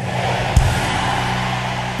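Large congregation shouting "amen" and cheering together, a steady roar of many voices over a few steady low tones, with a single thump about half a second in.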